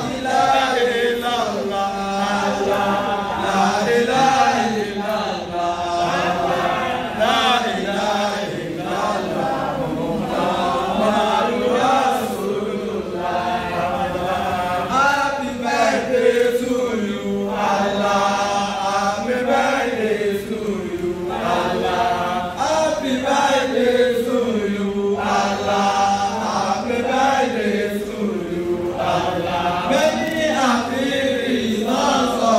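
Music with several voices singing together in a repetitive, chant-like melody over a steady held low note.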